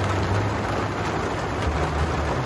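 Heavy rain falling on a camper's roof and window, a loud steady hiss, with a low steady hum beneath it.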